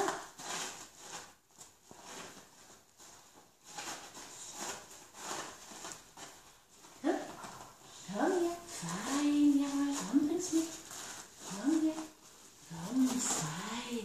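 Light rustling and crinkling of crumpled paper as a dog noses it on the floor, then from about halfway a woman's soft, sing-song coaxing voice with one drawn-out note.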